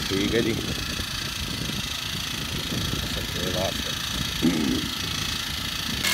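Small petrol engine of a backpack power sprayer running steadily, with a few short voices over it.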